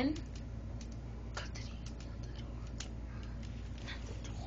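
Faint, scattered plastic clicks of Lego parts being handled while a Lego Beyblade launcher is wound up.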